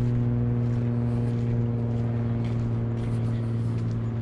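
A steady low hum holding one pitch throughout, with the light crunch of footsteps on a dirt path every second or so.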